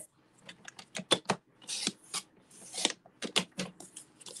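A paper trimmer cutting cardstock: a run of sharp clicks and taps as the card and the blade carriage are set against the rail, and two short raspy swishes about halfway through as the blade slides along its track.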